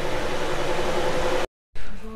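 Ceiling fan running with a steady whooshing hiss and a faint hum. The fan is spinning in reverse, which the owner puts down to its capacitor wiring. The sound cuts off suddenly about one and a half seconds in.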